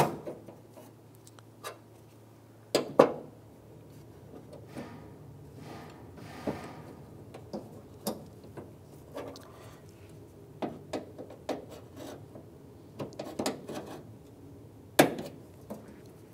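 Scattered small clicks and knocks as a metal tailgate latch rod and its plastic retainer clip are worked onto the latch with needle-nose pliers. The loudest knocks come about three seconds in and again near the end.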